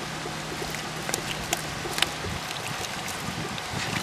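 Aquarium air pump bubbling air through a bucket of water: a steady bubbling hiss with a faint hum, and a few light ticks as crumbled worm castings drop into the water.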